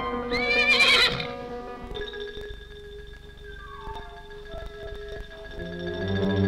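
A foal whinnies once, a short wavering call about half a second in, over background film music. The music carries on with held notes and a falling run of notes, growing louder near the end.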